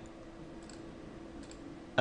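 A few faint computer mouse clicks, spaced irregularly, over a low steady hum.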